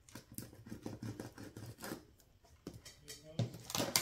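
Fingers pressing small glue dots onto a thin clear plastic panel on a tabletop: a scattering of light clicks and crinkles of the plastic.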